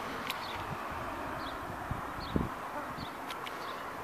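Outdoor ambience by a canal: a steady hiss with faint high chirps recurring throughout, and a few soft thumps of footsteps and camera handling, the loudest about two and a half seconds in.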